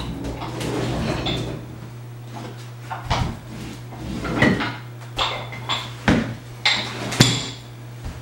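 Cast-iron dumbbells and weight plates clanking and knocking as they are lifted, shifted and set down on a wooden floor: a string of sharp metal clanks with a short ring, most of them in the second half.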